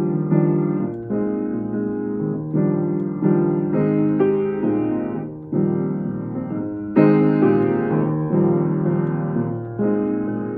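Baldwin Hamilton H396 baby grand piano being played: slow, sustained chords, each left to ring before a new one is struck about every second or so, with the loudest chord about seven seconds in.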